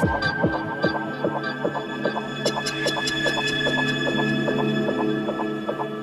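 Electronic drum and bass DJ mix going into a breakdown: the kick drums and deep bass drop out at the start, leaving a sustained synth pad over an even ticking rhythm, with hi-hats coming in about halfway through.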